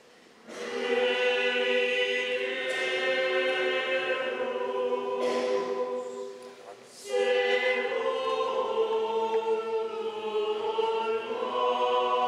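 Mixed choir of men's and women's voices singing unaccompanied in long held chords. It starts about half a second in, breaks off briefly about halfway through, then sings on.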